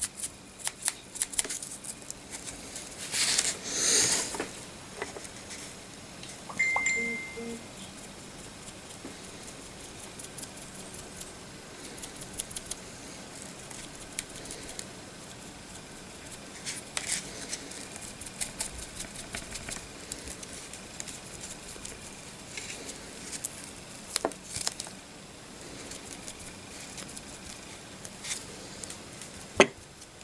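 Scattered light taps, clicks and rustles of a foam sponge being dabbed onto a hand-held plastic miniature, over quiet room tone. A louder rustle comes about three to four seconds in.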